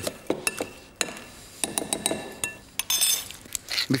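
A metal utensil clinking and knocking against cookware as mashed potato is worked with butter: a dozen or so separate sharp knocks, several leaving a short ringing tone.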